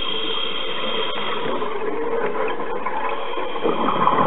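Steady mechanical whir with a constant high tone, picked up underwater by a camera in a dive housing. A louder rush of noise comes near the end.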